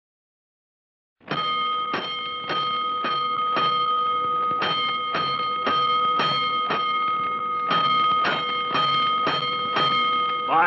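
Fire alarm bell struck over and over, about two strokes a second, with a steady ringing tone held beneath the strokes. It starts about a second in. This is the fire-house alarm signal opening the radio drama.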